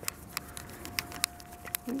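Microfiber cloth rubbing and scraping over a pair of reading glasses' lenses and plastic frame: a run of short, irregular scratchy clicks, a "ksh, ksh" sound.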